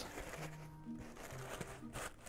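Faint background music with a few soft, sustained low notes, under light rustling of a canvas bag and its plastic lining being folded by hand.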